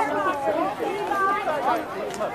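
Voices of people talking nearby, several conversations overlapping into an unintelligible chatter.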